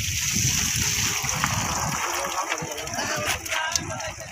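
Water splashing and sloshing, with people talking in the background.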